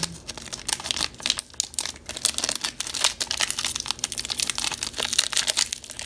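Foil wrapper of a Pokémon trading card booster pack crinkling in the hands as it is torn open across the top, a continuous dense crackle.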